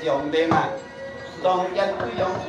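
Sharp knocks, three in two seconds (near the start, about half a second in and about a second and a half in), among several voices.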